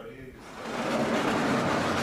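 Lecture-hall sliding blackboard panels running along their tracks: a rolling rumble that builds about half a second in and holds for over a second.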